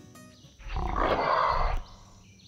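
A growling roar sound effect about a second long. It starts about half a second in, with a deep rumble under it, and cuts off sharply near the end.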